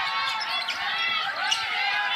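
Basketball court sounds: sneakers squeaking repeatedly on the hardwood floor and a basketball being dribbled, with a sharp bounce about one and a half seconds in.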